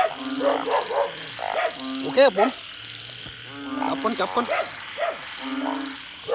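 Frogs calling in a rain-night chorus: a low, steady half-second call repeated about every second and a half to two seconds, over a continuous high-pitched chorus of calling frogs or insects. The callers are the burrowing narrow-mouthed frogs (อึ่ง) that emerge after rain.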